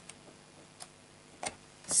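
Quiet handling of a paperback colouring book as its pages are turned and it is closed: a few faint, separate ticks, spaced irregularly, the clearest about a second and a half in.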